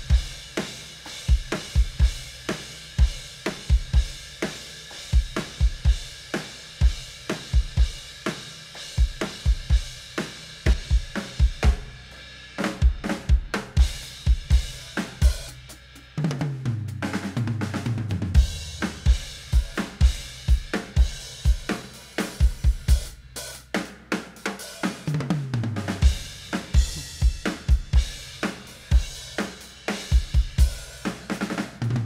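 Recorded acoustic drum kit played back from a multitrack session: steady kick, snare, hi-hat and cymbals. Two tom rolls fall in pitch, one about halfway through and one near the end.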